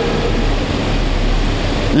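A steady rushing noise with a deep rumble underneath, about as loud as the speech around it; it ends as speech resumes.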